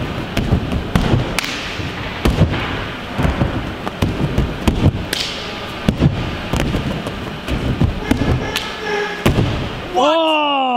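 A gymnast's hands and feet thudding on an inflatable air track through a tumbling run of handsprings and flips, one dull impact after another at uneven intervals.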